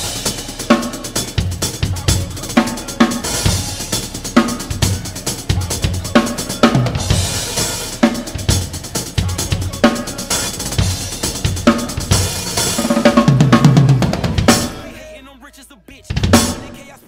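Acoustic drum kit played in a hip-hop groove, with kick, snare and cymbal strikes, starting suddenly. There is a louder stretch near the end, and then the sound dies away.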